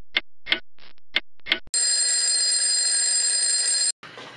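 Clock-ticking sound effect, about three ticks a second, followed by an alarm ringing for about two seconds that cuts off suddenly: a time-has-passed cue.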